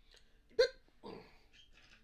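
A person's single short, sharp voiced sound, like a hiccup, about half a second in and much the loudest thing heard, followed by a brief breathy sound.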